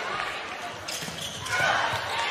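A volleyball rally in a large arena: one sharp smack of a ball being hit about a second in, over steady crowd noise that grows louder near the end.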